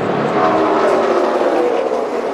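A pack of NASCAR Xfinity stock cars' V8 engines running at full speed, several engine tones sliding slowly down in pitch as the cars pass.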